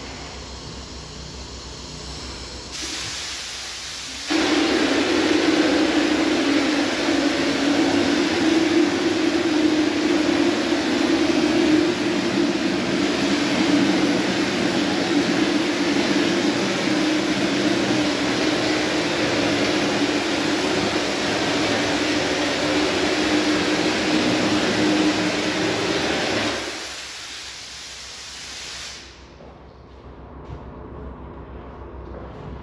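Drywall texture hopper gun spraying on compressed air: a hiss of air starts about three seconds in. About a second later comes a loud steady rush of spray with a low hum under it. That stops a few seconds before the end, leaving the air hiss, which then cuts off suddenly.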